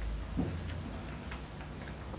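A few faint, irregularly spaced small clicks over a low steady hum.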